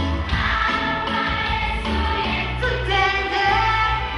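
A choir singing together over backing music with a strong bass line and a steady beat.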